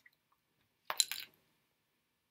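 A few small clicks close together, about a second in, with a short wet-sounding smear between them.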